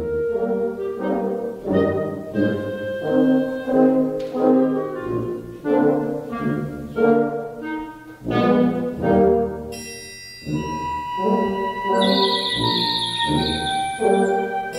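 Live concert wind ensemble playing a march, brass and French horns prominent in short, rhythmic chords. Higher instruments join with sustained high notes in the last few seconds.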